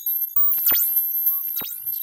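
Thor synthesizer bell patch made from two FM Pair oscillators, played by a Matrix pattern sequencer. It gives short high-pitched electronic notes, with sharp swooping pitch sweeps about once a second. The notes repeat through the newly switched-on delay.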